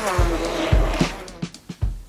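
Electric hand blender buzzing as it purées banana in grapefruit juice in a steel bowl, with a few knocks of the blender against the bowl. The buzz sags and dies away about one and a half seconds in.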